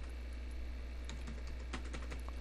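A few faint keystrokes on a computer keyboard, scattered ticks over a steady low hum.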